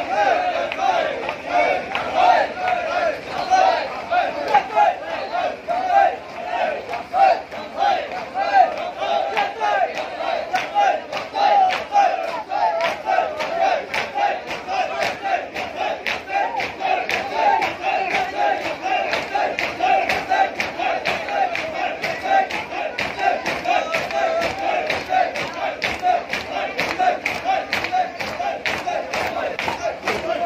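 A large crowd of men shouting together in a fast, steady chant. From about a third of the way in, sharp slaps join in a regular beat, typical of matam, mourners striking their chests with their hands in a Shia procession.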